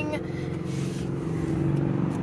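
2022 Hyundai Elantra N Line's 1.6-litre turbocharged four-cylinder engine idling, a steady low hum.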